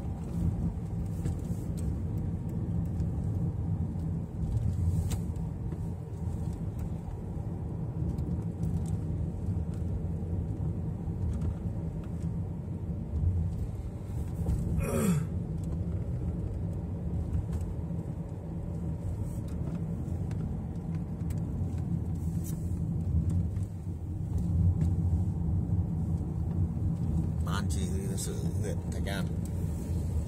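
Steady low rumble of a car's engine and tyres heard from inside the cabin while driving on a paved road. About halfway through comes a brief rising whistle-like sound, and near the end a few short, sharper sounds.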